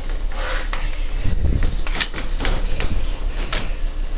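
Clothing rubbing over a body-worn camera's microphone, with a run of irregular sharp clicks and knocks from handling in a vehicle's cargo area.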